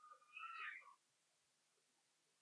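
Near silence in a hall, with one faint, brief high-pitched gliding call or squeak in the first second.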